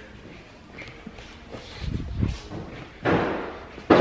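A few dull thumps, then a louder knock with a short fading rush about three seconds in, and a sharp click near the end.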